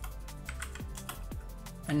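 Computer keyboard keys being pressed in a run of irregular clicks, over steady background music.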